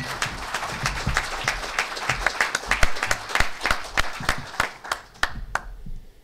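Audience applauding: a dense patter of many claps that thins out to a few last separate claps near the end.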